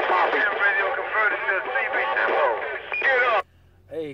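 Another operator's voice coming in over a CB radio, thin and narrow like radio audio, with an echo effect on his transmission. It cuts off sharply about three and a half seconds in as he unkeys.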